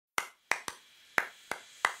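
Six sharp hand snaps in a syncopated rhythm, two groups of three, played as the percussive opening of a theme jingle.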